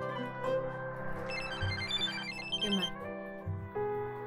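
A mobile phone's melodic ringtone, a quick run of short high notes lasting about two seconds from a second in, over soft background music.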